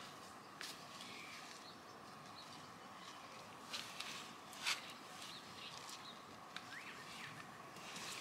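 Faint soft scrapes and rustles of garden soil being pressed around the base of a plant by a gloved hand, a few separate touches with the clearest about halfway through, over quiet outdoor background.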